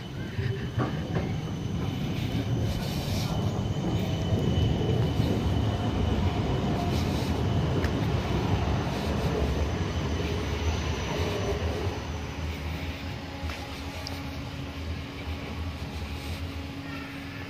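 A GVB Amsterdam tram running slowly past close by on its rails, with a steady rumble of wheels on track and a thin high whine over it. It is loudest in the middle and grows quieter over the last few seconds as the tram moves away.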